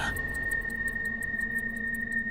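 Film soundtrack: a single steady high-pitched tone held throughout, over a faint low hum.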